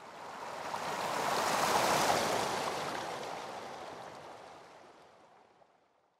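Whoosh sound effect: one smooth rush of noise like a wave washing in, building for about two seconds and then fading away over the next four.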